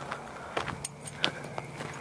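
Footsteps on a path with faint jingling and clicking of carried gear, including a few sharp ticks about half a second and a second in.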